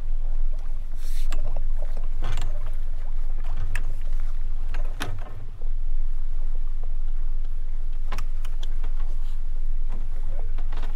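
Steady low rumble of a sailing yacht moving slowly up to a mooring into the wind, with scattered short knocks and splashes as a boat hook reaches over the bow for the mooring ball.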